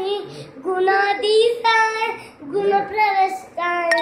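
A young boy singing a Hindu devotional chant to Ganesha alone, in held, pitched phrases with short breaks for breath. A sharp click comes just before the end.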